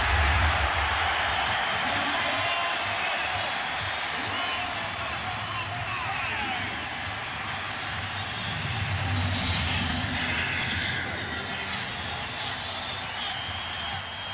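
Large stadium crowd cheering a home-team touchdown. It is loudest at the start and slowly dies down, with a second swell about two-thirds of the way through.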